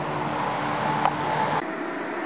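A steady low mechanical hum of fixed pitch, cut off by a sharp click about one and a half seconds in, after which only a quieter hiss remains.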